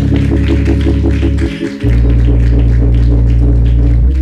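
Instrumental music: sustained keyboard chords over a held bass note. The chord breaks off briefly and changes a little under two seconds in, and changes again near the end.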